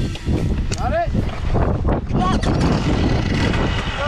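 Kawasaki KX100 two-stroke single engine running hard over rough rocky ground, with frequent knocks and rattles from the bike and wind on the microphone; a brief rising-then-falling pitched sweep about a second in, and a shorter one near the middle.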